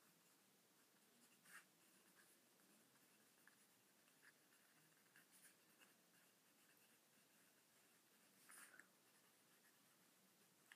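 Faint scratching of a pen writing on paper, with a few short strokes, the loudest about a second and a half in and again near the end.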